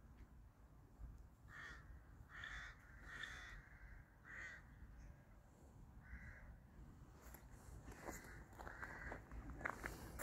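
Faint outdoor quiet with a bird calling several times in short separate calls. Faint footsteps begin near the end.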